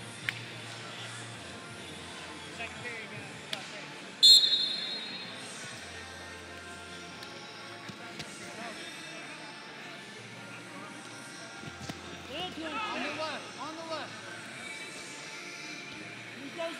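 Referee's whistle blown once, short and shrill, about four seconds in, starting the second period. Near the end, wrestling shoes squeak repeatedly on the mat as the two heavyweights push and hand-fight.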